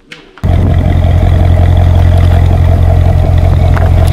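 Loud, steady car engine roar that cuts in abruptly about half a second in, used as an intro sound effect.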